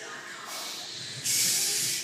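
A lifter's forceful hissing breath, typical of bracing under a loaded barbell before a heavy back squat. It comes in suddenly a little after a second in and lasts under a second.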